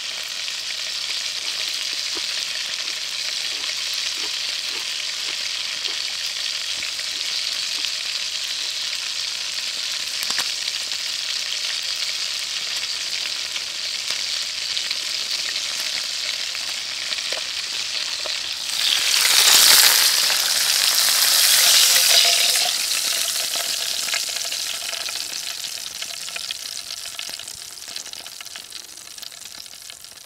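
Hamburger patty frying in a pan: a steady sizzle that surges louder for a few seconds about two-thirds of the way through, then dies away toward the end.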